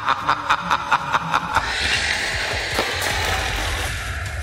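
A man's exaggerated villain laugh, a rapid 'ha-ha-ha' that stops about one and a half seconds in. A swelling whoosh with a low rumble under it follows: an added sound effect.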